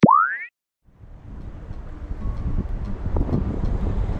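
A short cartoon 'boing' sound effect, a tone sweeping upward for about half a second. After a brief silence, wind noise on the microphone fades in and holds steady.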